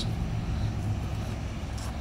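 2017 Mercedes-Benz E300's turbocharged four-cylinder engine idling in park: a steady low hum.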